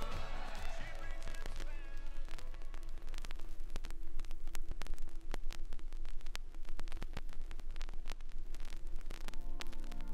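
Vinyl LP in the quiet groove between two songs: the last notes of one song die away in the first second or two, then surface crackle with scattered clicks runs on until the next song starts near the end.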